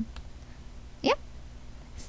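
A single short spoken "yeah" from a woman about a second in; otherwise quiet room tone.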